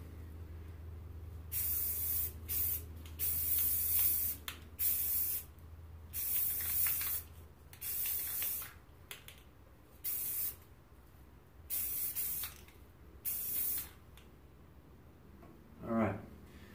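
Aerosol can of black spray paint sprayed in about a dozen short bursts of hiss, some brief puffs and some held for about a second: a rifle being rattle-canned in quick passes.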